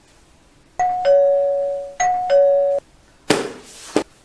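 Two-tone electronic ding-dong doorbell rung twice in quick succession, each time a higher note dropping to a lower, longer note. A short burst of noise and a sharp click follow near the end.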